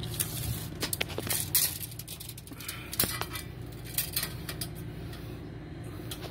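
Metallic clicks and clinks of a steel tape measure being handled and pulled out, its blade tapping against the stainless battery tray, most of them in the first second and a half, with a few more later.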